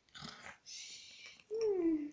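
A child's voice making pretend snoring sounds: a long hissing breath, then a loud voiced tone that slides down in pitch near the end.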